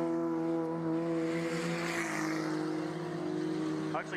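Junior sedan race cars on a dirt speedway, engines running at steady high revs with a steady engine tone. About halfway through, a rush of tyre and dirt noise swells and fades as a car passes close by.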